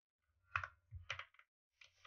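A few keystrokes on a computer keyboard: short, separate clicks starting about half a second in.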